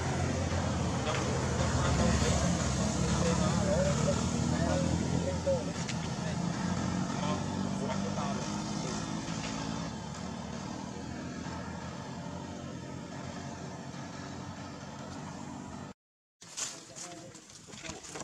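A motor vehicle's engine running, loudest in the first few seconds and fading after that, with indistinct voices mixed in. The sound cuts out briefly near the end.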